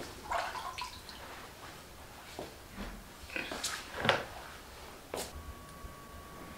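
Scattered small splashes and drips of water in a foot-soaking basin, mixed with cloth rustling as a towel is handled; the loudest splash comes about four seconds in.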